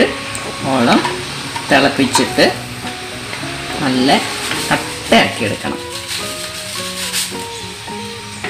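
Background music with a voice over it, and underneath, the stirring noise of a wooden spoon working hot milk in a steel pot on the stove.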